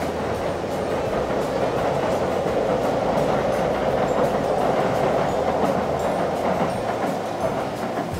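Electric passenger train running across a steel girder railway bridge: a steady rolling noise that grows a little louder toward the middle.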